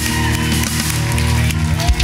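Live worship band playing loud, sustained chords.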